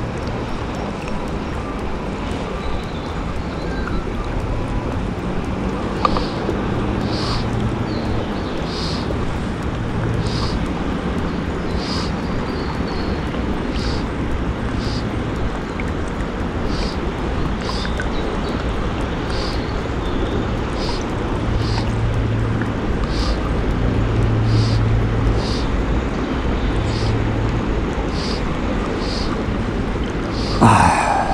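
Steady rush of river current with wind buffeting the microphone, and a faint high tick recurring about once a second.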